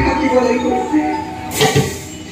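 A performer's amplified voice delivering drawn-out, melodic lines of Bhaona dialogue, with a short, sharp, bright hit about one and a half seconds in.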